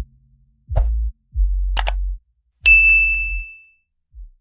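Subscribe-button outro sound effects: a few short deep bass hits, a sharp click just under two seconds in, then a bright bell-like notification ding that rings out and fades.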